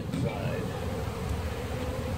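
Honeybees buzzing in a steady hum around an opened hive, over a low rumble.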